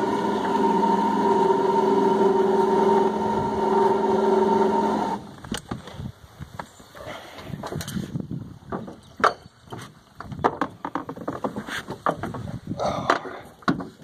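Boat motor running steadily, then cutting off about five seconds in. Irregular knocks and splashy noises follow.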